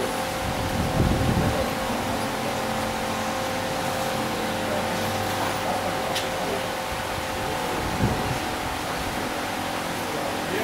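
Steady outdoor background hum holding a few faint steady tones, broken by two low rumbles, about a second in and again near eight seconds.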